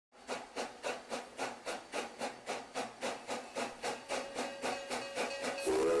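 Steam locomotive exhaust chuffing in a steady rhythm of about four chuffs a second, then the steam whistle starts blowing a sustained chord shortly before the end.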